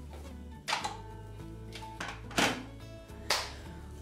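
Soft background music with four sharp knocks and clinks of a cup being set into a dish drainer, the loudest about two and a half seconds in.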